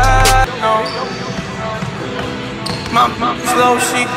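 Hip hop music with its heavy bass dropping out about half a second in, leaving a sparser passage, over a basketball bouncing on a hardwood gym floor.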